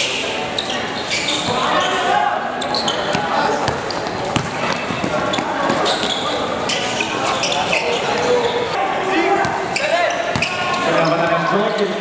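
A basketball bouncing on a hard court during live play, with many short thuds, amid the shouts and calls of players and people courtside.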